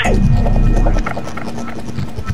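A steady low electrical hum over the low, even beat of background music, with a tone sliding down in pitch at the very start.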